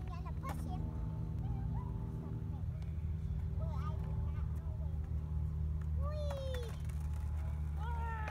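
Skateboard wheels rolling on concrete, a steady low rumble, with a separate steady hum that stops about a third of the way in.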